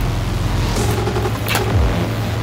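Steady low hum over background noise, with a short click or scrape about one and a half seconds in as a plug-in power adapter is lifted out of its cardboard box insert.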